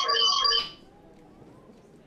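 A bell-like ringing with several steady tones, pulsing rapidly, that cuts off suddenly under a second in.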